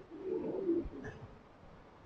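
A dove cooing faintly, one low coo in about the first second.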